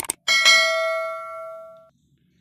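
Subscribe-button animation sound effect: two quick clicks, then a single bell chime with several ringing tones that fades out over about a second and a half.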